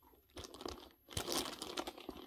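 Rustling and crinkling as a handbag is handled and lifted, in two spells with small clicks.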